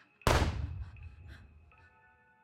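A single handgun shot, sudden and loud about a quarter second in, with a long low rumbling decay, over faint sustained music.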